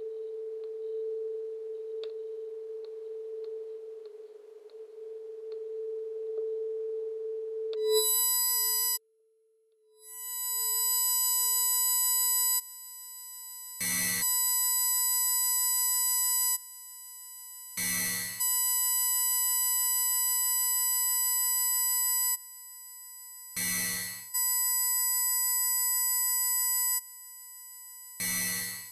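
Experimental electronic drone and noise music. A steady low tone holds for about eight seconds, then after a brief cut a chord of high, piercing sine-like tones switches on and off in blocks, broken by short noisy bursts roughly every four to six seconds.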